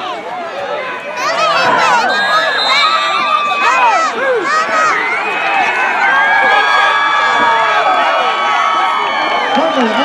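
Sideline crowd cheering and yelling, many voices overlapping, getting louder about a second in and staying loud with long drawn-out shouts.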